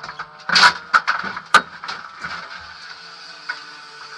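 Several sharp knocks and clatters inside a car cabin, bunched in the first two seconds, over a steady low hum that carries on afterwards.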